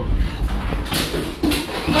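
Hurricane-force wind buffeting the phone's microphone as a deep rumble, heaviest at the start, with a few knocks and shuffling as the phone is carried.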